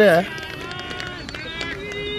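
A man's voice finishing a phrase in Hindi, then fainter voices of people talking in the background.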